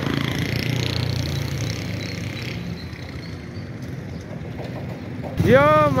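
A motorcycle engine running steadily beneath street noise. A man's voice starts near the end.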